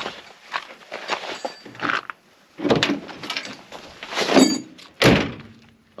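A series of knocks and clunks of hard gear being handled around a boat and its trailer, with a brief metallic ring about four seconds in and a heavier thump about a second later.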